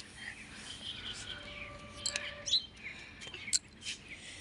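Small birds chirping, with many short overlapping calls and a few sharper, louder chirps in the second half.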